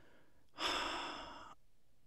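A man's audible sigh: one breath out lasting about a second, strongest at the start and fading away.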